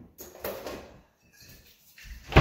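A kitchen unit door being opened, with brief handling noise as a glass bottle is taken out.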